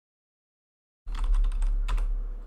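Computer keyboard typing a short run of keystrokes as a password is entered, starting about a second in, with a low hum underneath.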